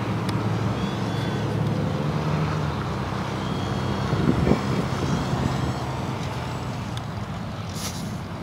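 Electric ducted fan of a radio-controlled F-35 model jet running at reduced power on a landing approach, a faint high whine in the first half, over a steady low rumble of gusty wind on the microphone. The sound slowly fades as the jet comes down.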